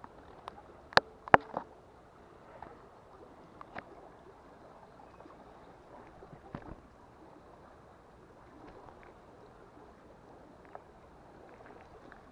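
Faint steady rush of a small creek, with a few sharp knocks and rustles as a landed rainbow trout is handled close to the microphone; the two loudest knocks come close together about a second in.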